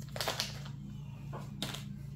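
Faint clicks and rustles of trading cards and their pack being handled, a few separate small sounds over a low steady hum.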